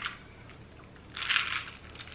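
A short sip of iced coffee through a metal straw, a brief hissing slurp about a second in, with quiet room tone around it.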